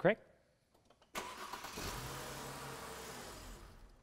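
Car engine being cranked by its electric starter motor. The sound starts suddenly about a second in, runs steadily for nearly three seconds and stops.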